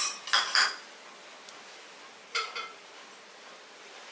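Metal kitchen utensils clinking against an aluminium kadai: a quick run of ringing clinks in the first second, and two more about two and a half seconds in.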